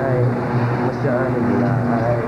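A steady low hum with indistinct voices over it.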